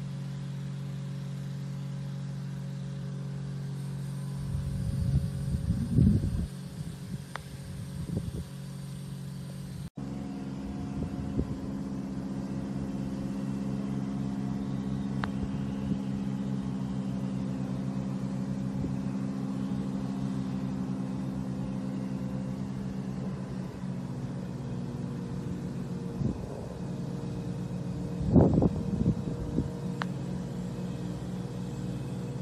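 A motor runs steadily as a low, even hum, broken once by a cut about ten seconds in. There are a couple of faint sharp clicks, and short rushes of noise about six seconds in and near the end.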